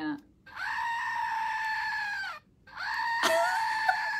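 Screaming Goat novelty toy set off twice: two long, steady-pitched goat screams of about two seconds each, with a short break between them.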